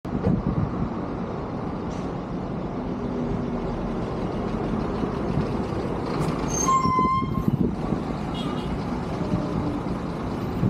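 Semi-truck tractor hauling an empty container chassis, its diesel engine running steadily as it drives past close by. About seven seconds in, a short high-pitched tone sounds for under a second.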